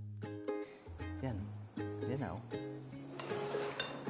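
Light background music of a plucked ukulele-like string instrument over steady bass notes. Near the end there are a few faint clinks, like a utensil against a pot or bowl.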